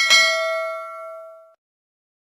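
Notification-bell "ding" sound effect: one bell-like chime struck once, ringing with several tones and fading away over about a second and a half.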